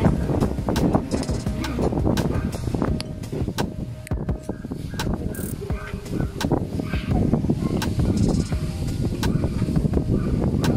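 Busy outdoor market ambience: indistinct voices, a low rumble, and frequent sharp clicks and knocks from handling of the hand-held microphone while walking.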